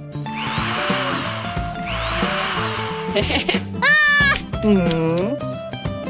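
Cartoon sound effect of a cordless drill whirring in two short bursts, each rising and then falling in pitch, over background music. Near the middle, two sliding pitched cartoon vocal sounds follow.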